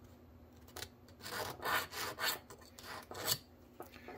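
Small needle file scraping in about half a dozen short, uneven strokes, starting about a second in, in the axle sockets of a model locomotive truck's spring-steel contact strip. It is filing rust and oxidation out of the sockets so they conduct well.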